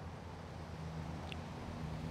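Quiet outdoor background: a soft even hiss with a steady low hum under it.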